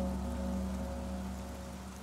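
Steady rain falling, under a held low music chord that slowly fades away.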